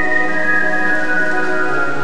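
Routine accompaniment music: a sustained chord of long, held notes.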